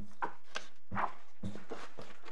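Papers being handled at a courtroom desk: a handful of short rustles and soft knocks spaced through the pause.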